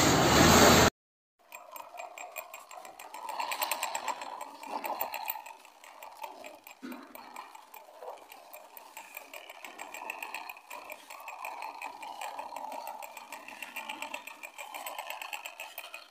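A loud, noisy rush cuts off abruptly about a second in. Then a toy police motorcycle's small motor and plastic gears whir with dense, rapid clicking, rising and falling in strength.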